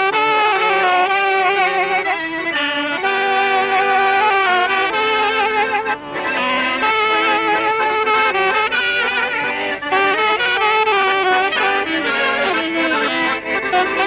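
A folk tune played live on saxophone and accordion, with a brief break in the melody about six seconds in.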